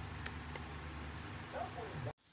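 A single high electronic beep lasting about a second from a Konquest KBP-2704A upper-arm blood pressure monitor, starting about half a second in, over a low steady hum.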